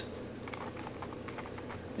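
Faint plastic clicking of a Royal Pyraminx, a six-layer pyraminx twisty puzzle, as one of its layers is turned by hand.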